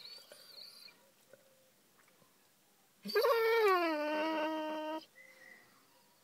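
Basset hound crying in distress. A thin, high whine fades out about a second in. Then comes a long, loud cry of about two seconds that falls in pitch and then holds steady.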